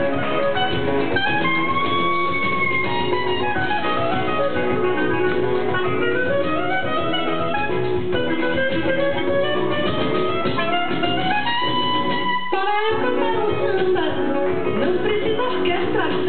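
Recorded samba music led by plucked guitar, its melody gliding up and down, playing steadily throughout.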